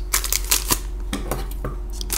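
Crinkling and small clicks of a foil-wrapped trading card pack being handled, with scissors brought up to cut it open near the end.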